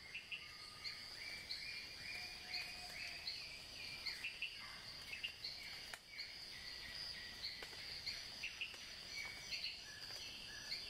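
Faint nature ambience of many small birds and insects chirping: short high notes repeating several times a second over a steady background hiss, some notes sliding down in pitch.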